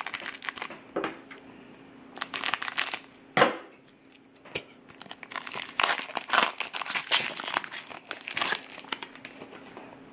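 Trading card pack's foil wrapper crinkling and crackling as it is handled and torn open. It comes in short bursts about two seconds in, then runs almost without break from about five to nine seconds.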